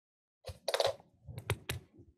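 Marker writing on a whiteboard: a series of sharp taps and short scratchy strokes, starting about half a second in.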